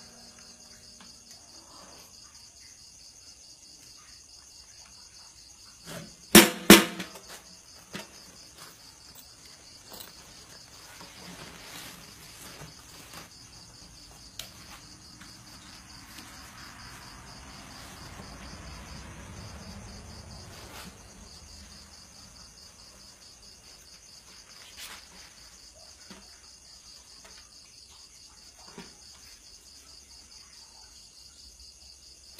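A steady high-pitched chorus of crickets chirping. About six seconds in come two loud knocks from a drum rig worn on the back, then a few faint knocks and handling sounds as the guitar is picked up.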